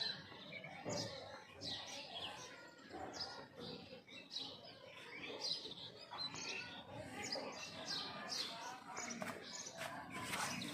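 Birds chirping over and over in short, falling notes.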